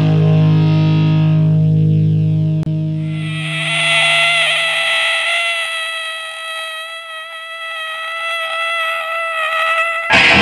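A distorted electric guitar note held and left to ring into a steady buzzing feedback tone during a break in a heavy hardcore punk song, while a low bass chord fades out in the first few seconds. There is a brief click a little under three seconds in, and the full band comes back in at the very end.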